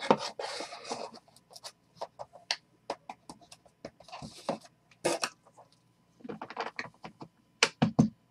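Trading cards being handled and laid down on a table: an irregular run of sharp taps and clicks, with short stretches of rustling and sliding as cards are shuffled and sorted into piles.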